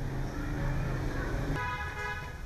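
Street traffic: a low steady hum, then a vehicle horn sounding as a held tone from about one and a half seconds in.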